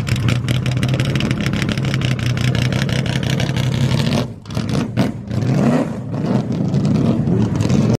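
Race-prepared 1964 Ford Falcon's V8 running loudly at a fast idle, then pulling away: the throttle is lifted twice, about four and five seconds in, and the engine revs up again twice near the end.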